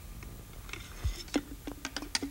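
Handling noise of a thermometer probe being dipped into a plastic bottle of rubbing alcohol: a few light clicks and taps, with one soft thump about a second in.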